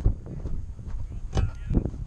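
Wind buffeting a body-worn camera's microphone in a steady low rumble, with a few short knocks from the wearer's movement, the loudest at the start and two more about a second and a half in.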